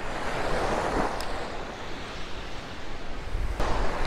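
Surf washing onto a sandy beach: a steady rush that swells about a second in and eases off, with some wind rumble on the microphone.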